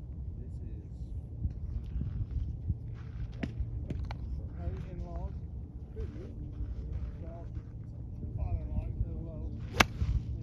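Golf ball struck with a 1984 Haig Ultra blade iron: one sharp click near the end, the loudest sound, with fainter clicks about three and four seconds in. A steady low rumble runs underneath.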